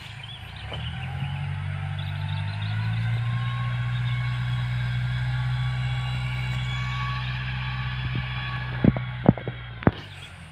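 Iseki tractor's engine running steadily, growing louder over the first few seconds, with its note shifting lower about three seconds in and easing off near the end. A few sharp knocks come close together near the end.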